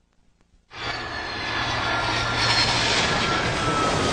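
Twin-engine jet airliner flying low overhead on its landing approach: after a brief silence, the engines' roar comes in about a second in and keeps building, with a faint whine that slowly falls in pitch.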